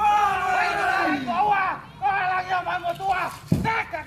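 A voice singing in long, held notes that slide in pitch, as accompaniment to a Tongan canoe dance.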